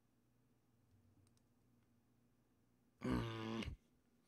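Near-silent room tone with a faint low hum and a couple of faint clicks, then about three seconds in a man's short, loud hummed "mm" that bends in pitch, as if weighing a choice.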